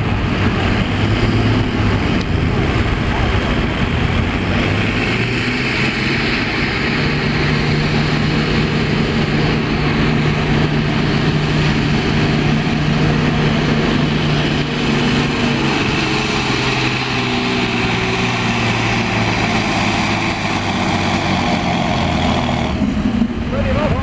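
Farm tractor's diesel engine working hard under full load as it drags a weight-transfer pulling sled, holding a steady pulling note that shifts slightly in pitch through the run. A voice is heard over the engine.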